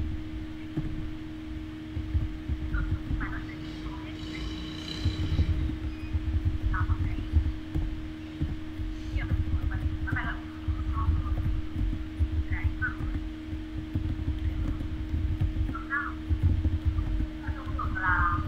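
Muffled, broken-up speech heard over an online video call, with a steady hum and a low rumble underneath.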